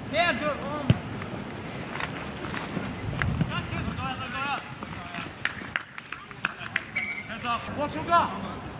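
Shouted calls from voices across a rugby league field, short and arching, coming in bursts at the start, midway and near the end. A sharp knock sounds about a second in, and a few fainter clicks follow.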